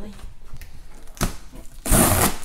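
Packing tape being torn from a cardboard box as its flaps are pulled open: a short rip about a second in, then a louder, longer rip near the end.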